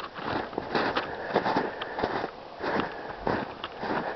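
Footsteps crunching in snow at a walking pace, a few irregular steps a second.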